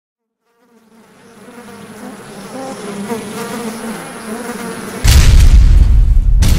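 A buzzing insect, fading in and growing steadily louder, then cut off by a sudden loud, deep boom about five seconds in.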